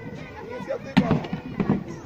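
A single sharp bang or crack about a second in, followed by a run of smaller knocks and clicks, with people's voices around them.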